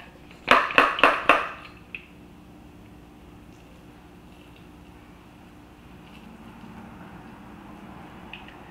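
Hand spray bottle watering freshly transplanted seedlings: four quick hissing sprays in a row in the first second and a half, then only a faint steady hum.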